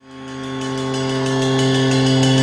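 Music: a single held note on a distorted electric guitar, fading in from silence and growing steadily louder as a rock track begins.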